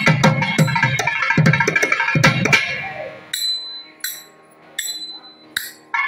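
Thavil, the South Indian barrel drum, played in a thani avarthanam percussion solo: a dense run of fast strokes with deep booms, thinning out about halfway through. The rest is four isolated sharp strokes with a brief ringing edge, under a second apart, with quiet between them.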